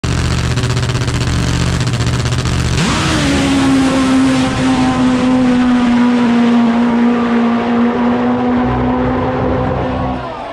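Top Fuel drag motorcycle's nitro-burning engine running at the start line, then launching about three seconds in: the engine note jumps sharply up and holds high as the bike runs off down the strip, sagging slightly in pitch and fading as it gets further away.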